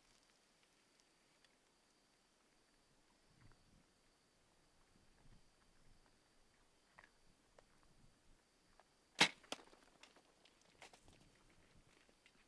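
Compound bow shot: a single sharp snap a little over nine seconds in, followed about a third of a second later by a second, weaker crack, then scattered light clicks and rustles. Before the shot there are only faint rustles over a faint steady high tone.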